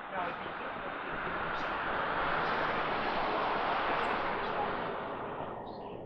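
A vehicle passing on the street, its tyre and road noise swelling to a peak mid-way and fading out, with faint voices in the background.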